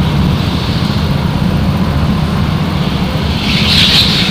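Go-kart engine running steadily under way, a loud low drone heard from onboard, with a brief higher-pitched sound near the end.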